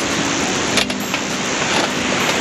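Steel panels of a folding fire pit clinking as they are fitted together onto the base, with one sharp metal click about a second in. Steady surf and wind noise underneath.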